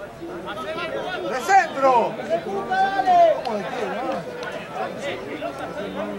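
Several voices calling and chattering over one another, no words clear, with the loudest shouts between about one and a half and three and a half seconds in.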